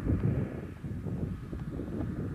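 Wind buffeting the camcorder microphone, an uneven low rumble.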